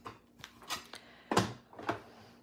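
Several light knocks and clicks of plastic cutting plates being handled and set on the platform of a manual die-cutting machine.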